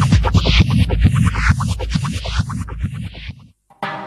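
Techno from a live set: a fast, dense kick-drum beat under a high sweep that falls in pitch. The music cuts out for about half a second, then a sustained chord comes in near the end.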